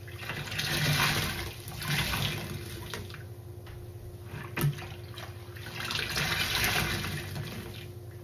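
Soapy kitchen sponges squeezed and pressed in a sink of sudsy rinse water: wet squishing and water gushing out in three surges, with one short sharp tap about halfway.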